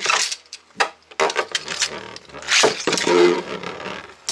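Two Beyblade spinning tops in a plastic stadium, clattering and scraping against the floor and each other in a run of clicks and rasps as they spin.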